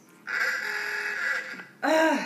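A person's long, harsh groan of exasperation, then a second, shorter groan falling in pitch near the end.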